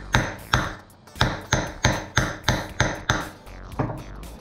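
Hammer striking a bolt set in the bushing bore of a Delco-Remy starter end cap, about three blows a second, each with a short metallic ring, stopping shortly before the end. The bolt drives wet tissue paper packed in the bore, and the pressure pushes the bronze bushing up and out.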